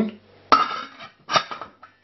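Stainless steel lid set down onto a stainless steel stockpot, clanking twice with a metallic ring, about half a second in and again a second later, the first the louder.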